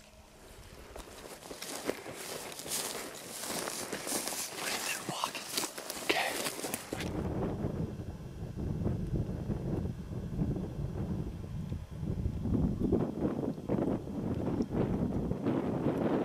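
Close rustling and scuffing, with many small clicks and brushes, for about seven seconds. Then it changes suddenly to a steady low rumble of wind buffeting the microphone.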